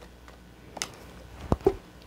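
Tarot cards being handled as one is drawn from the deck: a short, faint swish a little under a second in, then a sharp knock and a smaller click about halfway through.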